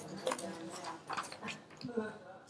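Quiet, indistinct talking.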